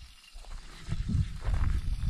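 Wind buffeting the microphone of a handheld action camera: an uneven low rumble that picks up about half a second in, with handling noise as the camera is turned.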